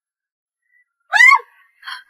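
A woman crying: about a second in, one short high-pitched sobbing cry, then a breathy gasp near the end. The rain on screen is not heard; the first second is silent.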